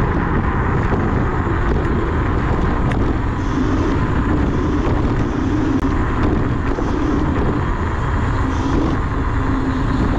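Wind rushing over the microphone of a handlebar camera on a moving electric scooter, a loud steady roar with a faint steady hum under it.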